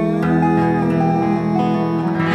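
Acoustic bluegrass string band playing an instrumental phrase without singing: plucked string notes pick out a short melody over a held chord.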